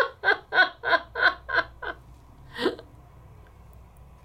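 A woman laughing: a quick run of 'ha' pulses, about four a second, that dies away about two seconds in, with one more short laugh near three seconds.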